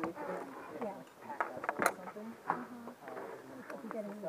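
Muffled, indistinct voices of people talking, broken by a few sharp clicks.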